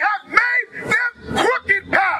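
A man's voice shouting in short, emphatic bursts through a microphone and PA speaker; the words are not clear.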